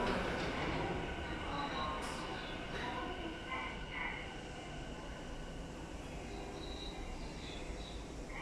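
Tokyo Metro 7000 series subway train standing at an underground platform: a steady, low hum with a few faint steady tones and occasional faint chirps over it. The last syllable of the platform announcement ends right at the start.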